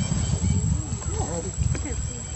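Young macaque giving a few short, rising-and-falling squealing calls about halfway in, over a loud, uneven low rumble.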